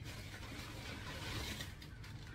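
Faint rustling of a plastic grocery bag as a hand rummages inside it, over a low steady background hum.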